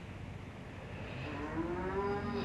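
Honda automatic scooter running at low speed, a steady low hum. About a second in, a long pitched call that slowly rises in pitch comes in over it and grows louder.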